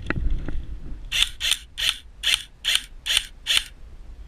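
Airsoft gun fired seven times in quick succession, about two and a half shots a second, each a short sharp mechanical shot. A handling knock comes just before the shots.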